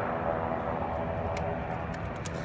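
Kawasaki Concours 14's inline-four engine idling steadily through an aftermarket Two Brothers exhaust, with a few light clicks in the second half.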